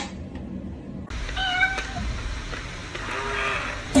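A single sharp tick at the start, then a cat meowing several short times.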